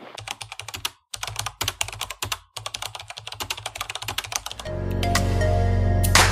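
Computer keyboard typing sound effect: a rapid run of key clicks with two brief pauses. Near the end, music with a heavy bass comes in and takes over.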